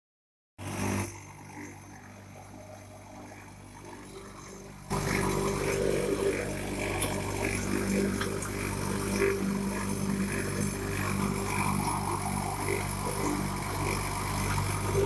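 Precast concrete wall panel extruder, a machine more than five years in service, running with a steady mechanical hum. The hum grows markedly louder and fuller about five seconds in.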